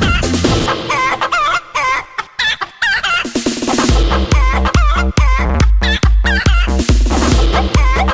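Electronic dance track built on sampled chicken clucks and crowing. The low beat drops out about a second and a half in, and a heavy, regular kick drum comes back at about four seconds in.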